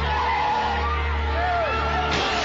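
Car tyres squealing in short, overlapping rising-and-falling squeals over a low steady hum.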